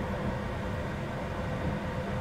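Steady low rumble and hum of a car cabin, with no sudden events.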